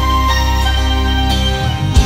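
Live band playing an instrumental passage of cumbia-style music: steady bass notes under a melodic lead line, with a loud hit right at the end.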